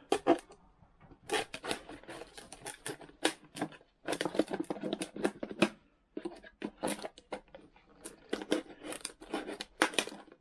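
Hoof-trimming nippers snipping through a plastic gallon milk jug: rapid runs of sharp cuts and plastic crackles, in several bursts with short pauses between.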